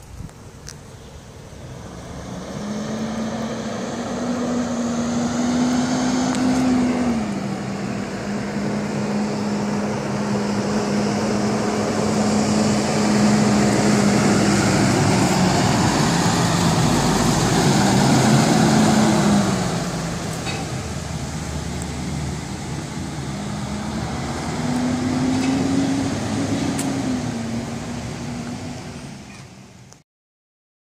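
IC CE school bus driving past, its engine note climbing and dropping back several times as it pulls along. It gets louder as it approaches, is loudest as it passes in the middle, then fades away near the end.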